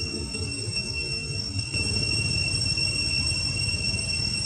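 Low rumbling noise on the camera's microphone as the camera is swung around, getting louder about two seconds in, under a steady high-pitched whine.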